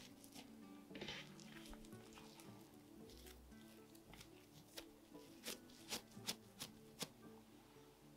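Very faint background music, with a few soft pats and taps in the second half as hands fold soft raisin bread dough in thirds on a countertop.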